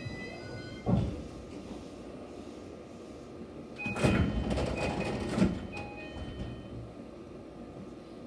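Train's sliding passenger doors opening with a short series of high chime beeps and a rush of door noise about four seconds in, just after the train stops at a platform. A single thump about a second in.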